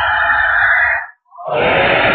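Chanting voices that break off about a second in for a short silence, then a new passage of chanting begins.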